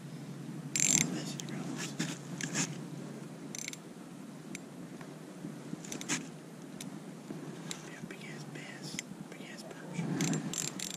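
A few scattered sharp clicks and scrapes of hands handling an ice-fishing rod and small spinning reel, over a steady soft hiss. The loudest click comes about a second in.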